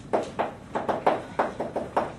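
Chalk on a blackboard while writing: a quick run of short, sharp taps and strokes, about four a second.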